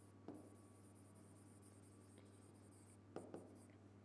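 Faint scratching of a pen writing on an interactive whiteboard screen, with a light tap about a third of a second in and a couple more just after three seconds.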